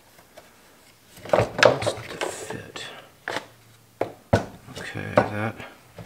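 A man muttering under his breath, with clicks and knocks from a plastic top handle being forced onto a Stihl 180C chainsaw's housing; there is a sharp knock about four seconds in.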